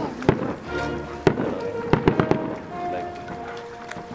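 Aerial fireworks shells bursting: sharp bangs, one just after the start, another about a second in and a quick cluster around two seconds, with music and voices underneath.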